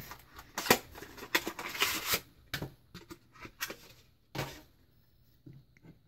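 Cardboard retail box and packaging of a Samsung SSD being handled and opened: a quick flurry of rustles and sharp clicks in the first two seconds, then a few scattered clicks.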